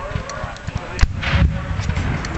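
A single black-powder cannon shot about a second in: a sharp crack followed by a low rolling boom, a reenactment field artillery piece firing a blank charge.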